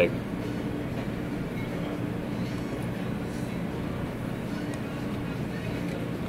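Steady, even background hum of a restaurant dining room, with no distinct events.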